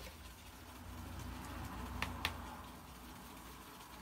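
Two light clicks about two seconds in, a quarter second apart, as a watercolour brush taps the palette while darker greens are mixed, over a low steady room hum.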